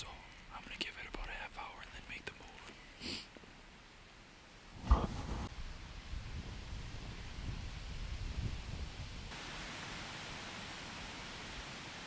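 A man whispering for the first few seconds, then a single loud thump about five seconds in, followed by low rumbling noise and a steady hiss.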